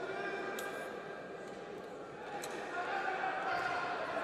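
Background murmur of voices in a large sports hall, growing louder in the last second or so, with two faint sharp clicks.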